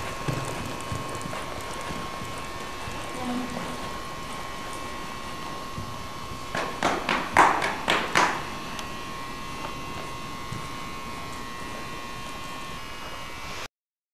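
Hoofbeats of a pony trotting on an indoor arena's sand footing: a short run of about six knocks in quick succession, a little past halfway. Under them runs a steady background hiss with a faint constant high whine.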